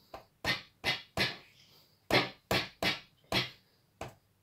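SynClap analogue electronic handclap generator firing synthesized claps as its piezo pad is tapped: about seven short, snappy noise bursts with a brief decay, three in quick succession and then four more, the loudest a little past halfway.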